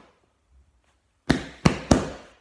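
Three loud knocks on a door in quick succession in the second half, each with a short ringing tail: someone at the door.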